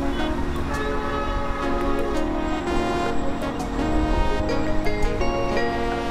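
Background music: sustained chords that change every second or so over a steady low beat.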